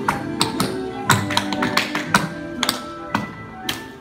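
Tap shoes striking a hardwood floor in a quick, uneven run of sharp taps, over recorded music with guitar.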